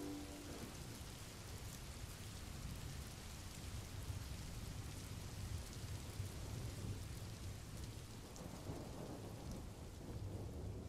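Recorded rain sound effect: steady rainfall with a low rumble of thunder, faint. The last ukulele chord rings out and fades in the first half second.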